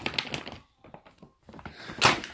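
Handling noise: a few short clicks and knocks in the first half second, then a few faint ticks with mostly quiet between them.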